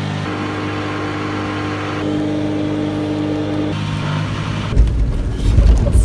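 Fiat 500X engine held at high revs, steady in pitch with a small step up just after the start, easing off about four seconds in. Near the end, loud low rumbling and knocks take over.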